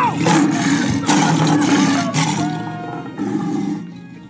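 A lion-roar sound effect with noisy blasts over background music. It is loud for the first two and a half seconds, then fades away.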